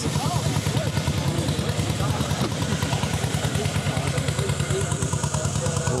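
Vintage cycle-car engine running steadily with a rapid, even exhaust beat, with faint voices behind it.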